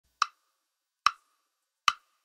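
Three sharp, short percussion clicks spaced evenly about a second apart: a count-in just before the parang band starts playing.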